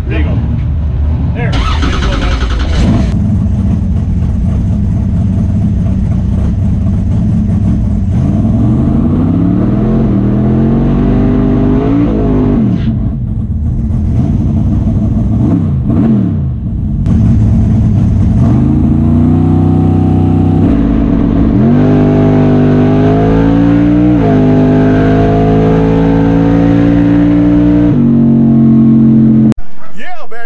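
Drag race car engine running in the cabin, revs rising and falling several times, then held at a higher, steadier note for the last ten seconds or so before the sound cuts off suddenly.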